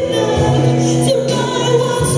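Mixed church choir singing a solemn worship song in long held notes.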